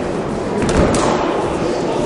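Echoing sports-hall noise of many voices around a boxing ring, with a few dull thuds about a second in from the bout: gloved punches and footwork on the ring canvas.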